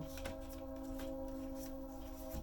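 Tarot cards being handled and drawn from a deck, with soft faint clicks and slides. A steady sustained tone of several held notes sounds underneath.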